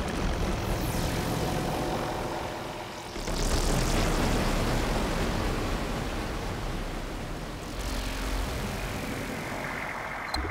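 Outro of a psytrance track with the beat dropped out: whooshing electronic noise sweeps over a low steady drone. A fresh swell comes in about three seconds in and another near eight seconds.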